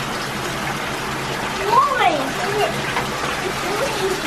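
Bathtub faucet running, a steady stream of water pouring from the spout into the tub. A brief voice slides up and down about two seconds in, over the water.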